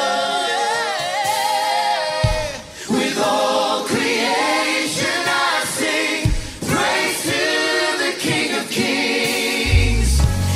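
A choir singing a Christian worship song in harmony, with a deep low tone coming in just before the end.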